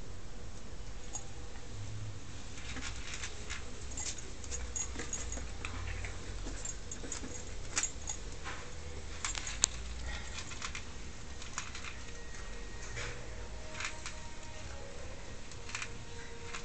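Yorkshire terrier eating dry kibble: irregular crunches and clicks, with one sharper click a little past halfway.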